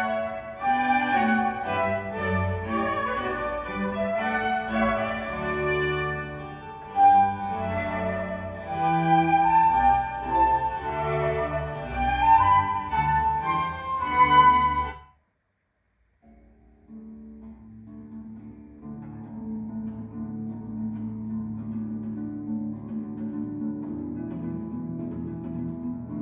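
Orchestral classical music with bowed strings, played back on a hi-fi system through a pair of Coral three-way speakers. It stops abruptly about 15 seconds in; after a second of silence a quieter piece with long held notes begins.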